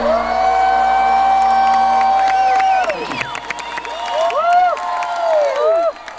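Concert crowd cheering at the end of a song. There is one long held shout for about the first three seconds, then several rising-and-falling whoops close to the microphone.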